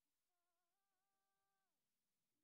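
Near silence, with a very faint held tone with overtones that rises slightly and fades out shortly before the end.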